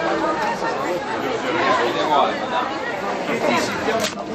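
People's voices chatting, several talking at once, with the words not clear.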